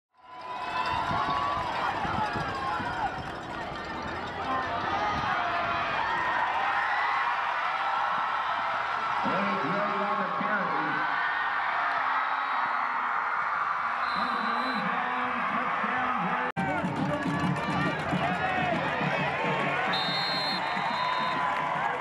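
Football game crowd: many voices shouting and cheering together at once. There is a brief drop-out about three-quarters of the way in.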